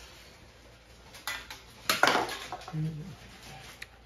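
A few light metallic clinks and knocks from handling around a bare engine block and crankshaft. The loudest comes about two seconds in, with a short ring after it.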